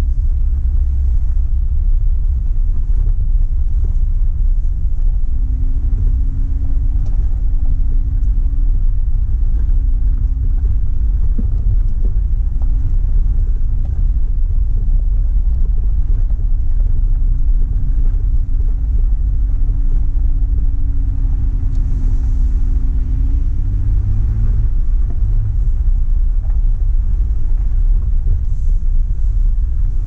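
Off-road 4x4 driving up a gravel trail: a steady low rumble of engine, tyres and wind buffeting the microphone, under a faint engine note that changes pitch near the end.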